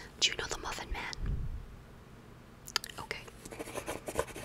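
Soft close-microphone whispering, with light scratches of a pencil writing on paper on a clipboard near the end.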